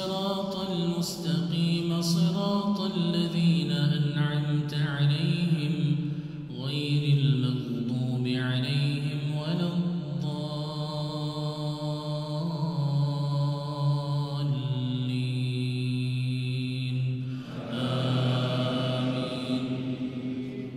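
A man's voice reciting the Quran in Arabic as a slow, melodic chant through a microphone, with long drawn-out notes and a couple of short breaks for breath.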